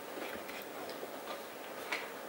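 Quiet room tone in a lecture hall with a few faint, scattered small ticks, the clearest one just before the end.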